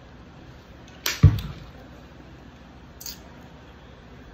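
A plastic water bottle set down on a desk with a thump about a second in, then a lighter click about three seconds in.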